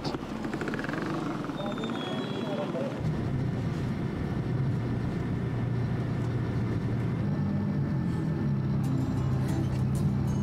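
Street traffic with vehicle engines running. Background music with low held notes comes in about three seconds in and continues under it.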